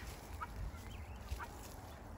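Helmeted guineafowl feeding, giving a couple of faint, short chirping calls, one about half a second in and another about a second and a half in.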